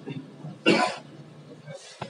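A person coughs once, briefly, about two-thirds of a second in.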